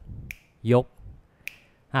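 Two crisp finger snaps a little over a second apart, keeping time. Between them a man speaks a short counting syllable.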